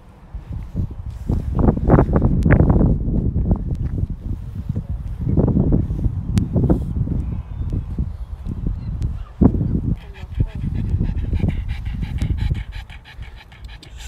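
A pug panting hard, breath after breath in uneven bursts, over a steady low rumble.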